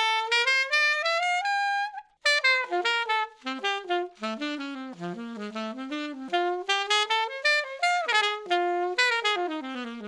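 Alto saxophone played through a SYOS Spark mouthpiece, a high-baffle model with a funky baffle: a quick run climbing about two octaves, a brief break about two seconds in, then a fast jazz line of short notes, mostly in the low and middle register, ending on a held low note. It is really free-blowing, with an effortless low and middle register.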